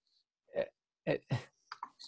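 A few short, halting spoken fragments from one voice, with dead silence between them: a speaker hesitating mid-sentence.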